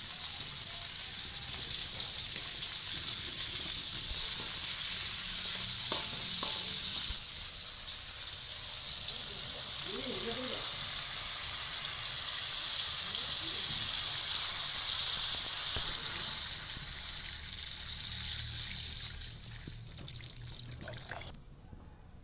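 Sliced vegetables and tomatoes sizzling in hot oil in an aluminium wok, a steady hiss that dies down over the last few seconds.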